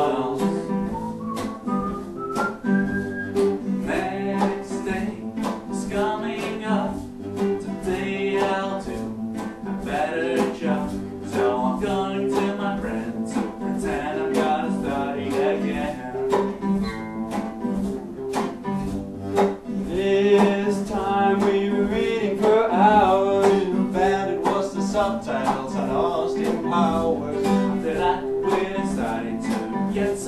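Two acoustic guitars strummed in a steady rhythm, with male voices singing over them.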